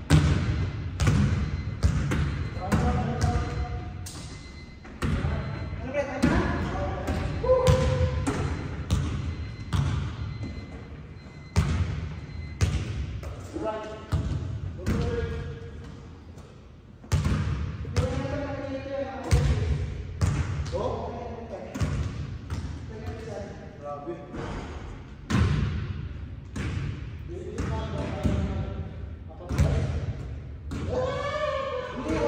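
Basketballs bouncing on a hardwood gym floor: irregular thuds, many over the span, each ringing briefly in the large hall.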